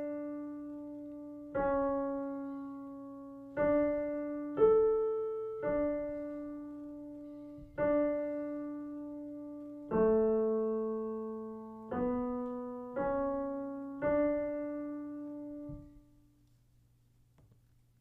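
Piano playing a slow single-line melody in D major, one note at a time in quarter, half and whole-note lengths. Each note is struck and left to fade. The melody ends on a long held low note that dies away about two-thirds of the way through.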